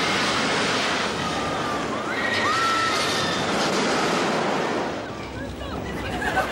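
Roller coaster car running along its track with a continuous rattling rush, as riders scream; the loudest screams come two to three seconds in, and the rush eases slightly near the end.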